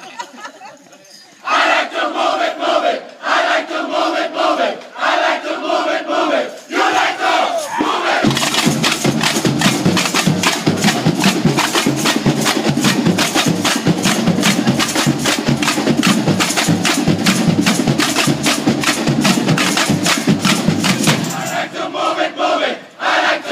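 A large group shouts together in several short unison calls. About eight seconds in, a samba bateria starts playing: surdo bass drums, snare drums and tamborims in a fast, dense rhythm.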